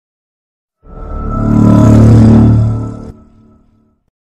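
Opening intro music: a deep, swelling tone rises out of silence about a second in, peaks, then drops off suddenly after about three seconds, leaving a faint tail.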